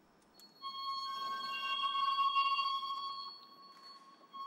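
Stroh violin (horn violin) holding one high bowed note. The note starts about half a second in, holds steady for about two and a half seconds, then fades away.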